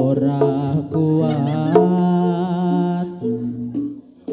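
Javanese gamelan music accompanying a barong trance dance: a voice sings long, wavering notes over steady sustained instrument tones. The sound dips briefly near the end.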